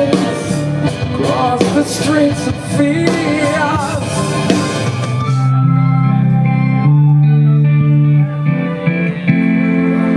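Live rock band playing through a PA: drums, cymbals, guitar and singing, until about five and a half seconds in the drums drop out. After that, held keyboard organ chords carry on, changing every second or so.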